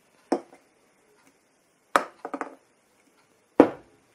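Three knocks on a bar counter as an aluminium beer can and pint glasses are set down and moved. The last knock, near the end, is the loudest.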